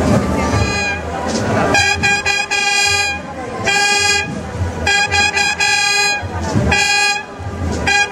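Brass fanfare: trumpets sounding a series of about five long, steady held notes, starting about two seconds in and broken by short gaps, with low drumming underneath.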